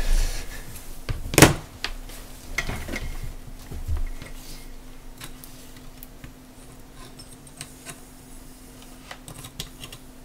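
Hard objects clattering while someone rummages for a USB lead and a power bank, with a sharp knock about one and a half seconds in and a few smaller knocks in the next few seconds. After that come lighter clicks and taps as wires and a small circuit module are handled on a plastic breadboard.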